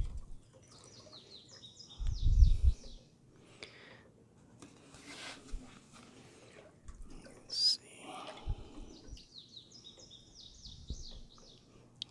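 A songbird singing: a phrase of quick, high, descending notes, heard twice, once near the start and again near the end. A low rumbling bump about two seconds in is the loudest sound.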